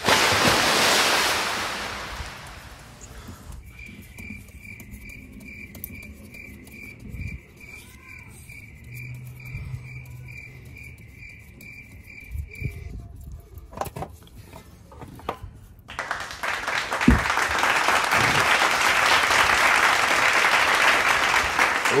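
Warm engine oil pouring from the oil-pan drain hole and splattering, loud at first and fading over about two seconds, then loud again for the last six seconds. In between, a quieter stretch holds a high beep repeating about twice a second.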